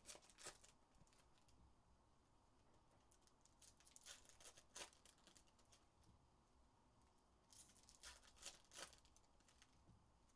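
Faint handling of trading cards and foil pack wrappers on a table: soft flicks and rustles, heard once near the start, a couple of times about four to five seconds in, and in a short cluster near eight to nine seconds, over near silence.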